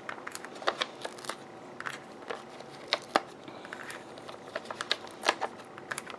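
Foam adhesive dimensionals being peeled off their backing sheet and pressed onto small card-stock squares: light, irregular clicks, taps and paper rustles on a tabletop.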